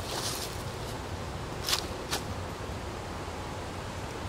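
Steady outdoor background hiss, with two brief rustles a little before and after the two-second mark.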